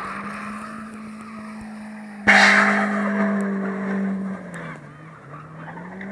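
1994 Toyota Corolla's engine held at high revs while it spins its wheels, with a loud tyre squeal breaking out suddenly about two seconds in and fading out. Near the end the revs drop briefly, then rise again.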